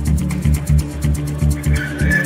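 Electronic dance music from a club DJ set: a steady four-on-the-floor kick and bassline with regular hi-hat ticks. A high sustained tone comes in near the end.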